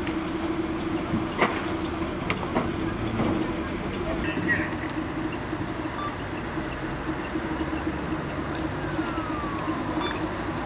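A fire engine's motor running with a steady drone, with a few sharp clicks and knocks over it.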